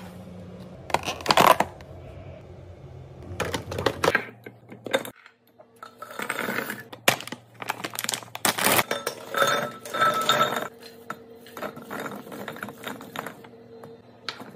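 Plastic snack wrappers crinkling, then wrapped Reese's peanut butter cups poured into a tall glass canister, clattering and clinking against the glass in several bursts.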